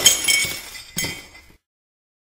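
Glass-shattering sound effect: a crash with tinkling shards that rings and dies away, then a second, smaller crash about a second in. It cuts off sharply about a second and a half in.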